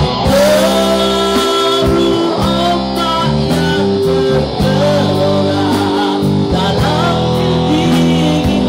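Live rock band playing in a rehearsal room: electric guitar and drum kit, with a man singing into a microphone over the band through the PA.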